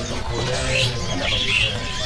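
Caged songbirds giving a few short, high chirps over a steady low background hum, with faint music mixed in.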